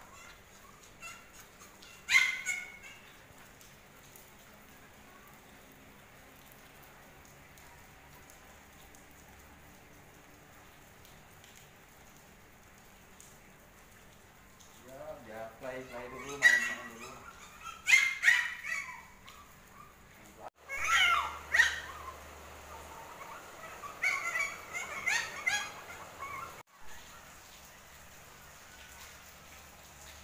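Pomeranian puppies yipping: one sharp, high-pitched yip about two seconds in, then a run of short yips and barks in the second half.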